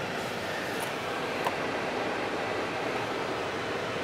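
Steady background hiss with no clear source, with one faint click about one and a half seconds in.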